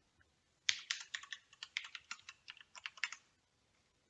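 Typing on a computer keyboard: a quick run of keystrokes that starts under a second in and stops a little after three seconds.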